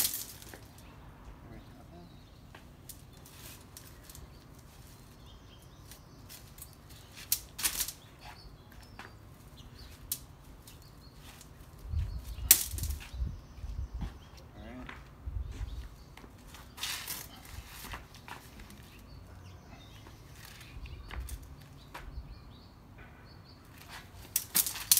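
Steel spring frame and netting of a collapsible coil trap being handled and twisted to fold it, giving scattered clacks, rattles and rustles. The sharpest clacks come at the start, about seven seconds in, about twelve seconds in and about seventeen seconds in, with low thuds around the middle.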